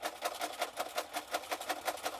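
Electric sewing machine running steadily, stitching a seam through layered cotton fabric, with an even, rapid clicking of the needle at about seven stitches a second.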